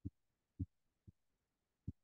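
Four soft, low taps of a stylus on a tablet's glass screen, spaced unevenly over two seconds.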